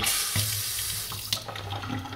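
Kitchen faucet water splashing into a stainless steel sink, starting suddenly and easing off over the two seconds, with a steady low hum underneath from about a third of a second in.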